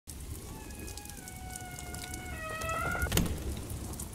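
Rain sound effect, a steady patter of drops, with a few faint held tones sliding slowly down in pitch under it and a single sharp crack a little after three seconds.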